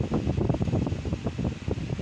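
Steady rushing, crackly noise of air from a fan buffeting the microphone.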